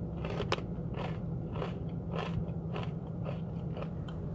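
Steady low engine hum inside a car cabin, with a run of soft crunching noises about three a second over it.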